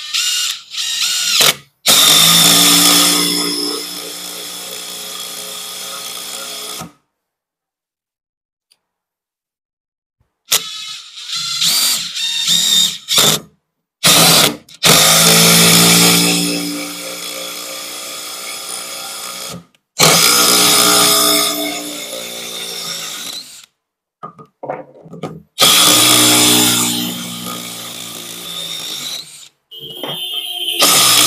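DeWalt DCF850 brushless 20V impact driver driving long screws into hard wood. It runs in four stretches of about four to five seconds, each loudest at its start, with shorter stop-start bursts between them and a silent gap of a few seconds about a quarter of the way in.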